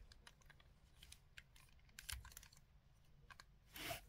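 Near silence with a few faint, scattered clicks and taps from a plastic shark Zord toy being handled and turned in the hands.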